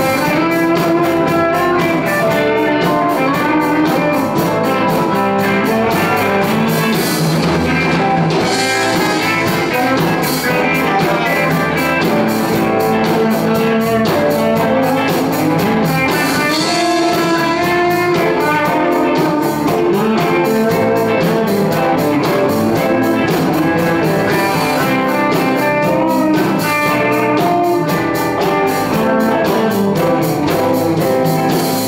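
Live blues band playing an instrumental passage: electric guitars over a drum kit keeping a steady beat.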